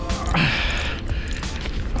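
A man's short, breathy, effortful grunt about half a second in, falling in pitch, while he fights a hooked fish on rod and reel, over a steady low rumble.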